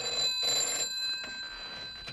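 Telephone bell ringing an incoming call: a double ring with a short break in the middle, its tone dying away after.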